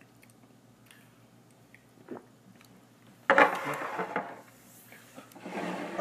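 Faint room tone, then about three seconds in a sudden loud, breathy exhale with some voice in it, fading over about a second: a man's reaction just after knocking back a shot of rum.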